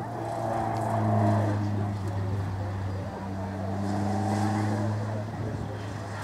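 Peugeot 106 race car's 1.6-litre four-cylinder engine running hard as the car sprints past and away, with a short dip in the engine note about three seconds in and again near five seconds before it pulls on.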